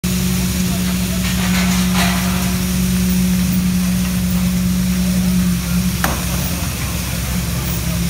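Construction site noise: a steady engine hum from machinery, with a few light knocks and one sharp metallic clank about six seconds in.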